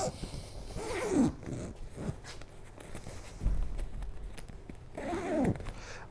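Zipper on a Tutis Sky pram carrycot's fabric canopy being pulled along to close the hood's extension section. It goes in a few short drags, with a run of small clicks in the middle.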